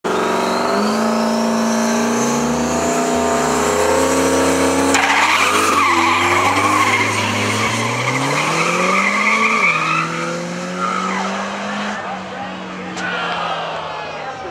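Turbocharged Ford Mustang drag car at high revs with a rising turbo whine. About five seconds in it changes suddenly to a louder run with tyre squeal. The engine note climbs, drops back near ten seconds, and then fades as the car goes down the strip.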